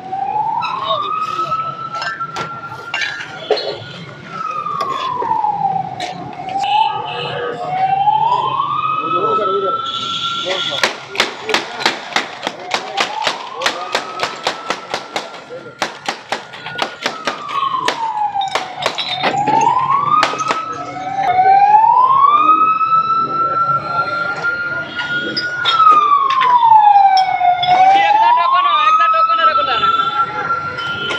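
An emergency-vehicle siren wailing slowly up and down, one rise and fall about every six seconds, over crowd chatter. Midway there is a quick run of sharp glassy clicks from soda bottles being handled.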